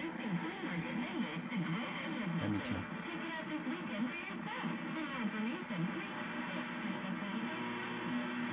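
Demodulated test-signal audio from the ICOM IC-7300 transceiver's speaker: the signal generator's carrier, modulated from an external audio source, comes through as a continuous voice-like program with wavering pitch.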